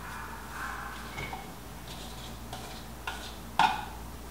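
Light kitchen handling: a few soft clicks and knocks as a bowl and a metal skillet are handled on the stovetop, with one sharper knock near the end.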